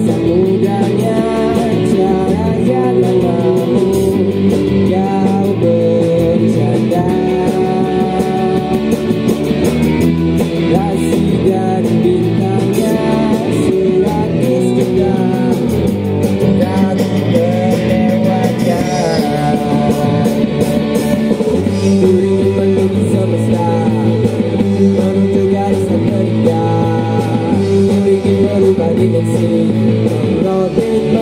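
Rock band playing live: electric guitars and a drum kit with cymbals, with a singer's voice over them.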